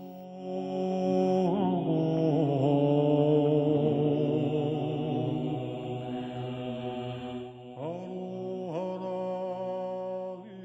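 Music: a slow chant of long held notes on several pitches, swelling in the first second or so, with new notes sliding in near the end.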